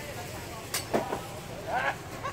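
Background voices of people talking outdoors over a low steady rumble, with a sharp click under a second in and a clearer voice near the end.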